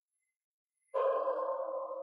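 An electronic sound-effect tone, several steady pitches held together, starting suddenly about a second in and cutting off abruptly about a second and a half later.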